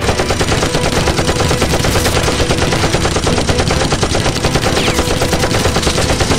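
Sustained automatic rifle fire: a rapid, unbroken string of shots that starts suddenly.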